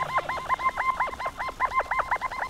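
A rapid, even run of short honk-like calls, about eight a second, each dipping in pitch. It is a sound effect on an animated outro.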